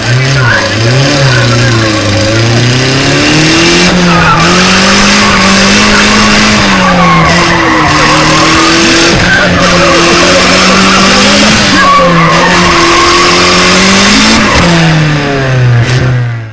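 Race car engine held at high revs, its note swinging slowly up and down, with tyres squealing continuously over it, as in a drift run.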